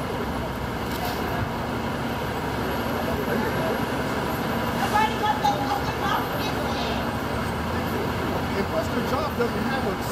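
Steady city road-traffic noise, with indistinct voices talking in the middle.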